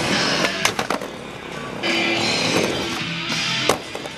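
Skateboard wheels rolling on a hardwood floor, with a few sharp clacks of the board about half a second in and a hard landing thud near the end, under music.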